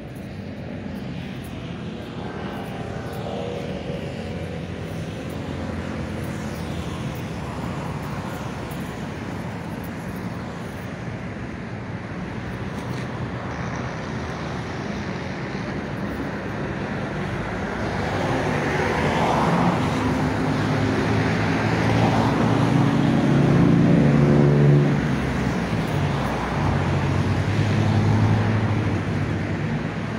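Street traffic going past: a steady rush of road noise, with the engine hum of passing vehicles growing louder in the second half and swelling twice near the end.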